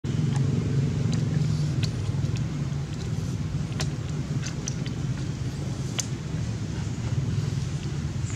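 A steady low rumble throughout, with a few short sharp ticks scattered through it.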